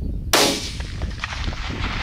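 A single rifle shot from a .22 Creedmoor, sharp and sudden about a third of a second in, followed by a long rolling echo that slowly fades.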